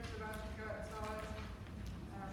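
A woman speaking, indistinct, over a low steady rumble.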